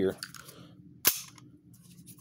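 One sharp metallic clack about a second in, with a brief ring, as the unloaded stainless .45 semi-automatic pistol is picked up and handled.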